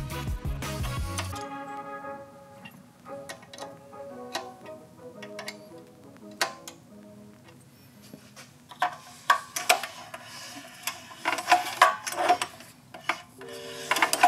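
Background music, its bass dropping out after about a second and a half, with irregular light metallic clicks and taps from hands working the rocker arms and push rods of a Predator 212 engine's valve train while the valves are set at zero lash. The clicks come thickest in the last few seconds.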